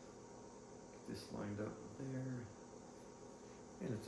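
A man's voice: two brief spoken bits, about a second in and about two seconds in, over quiet room tone.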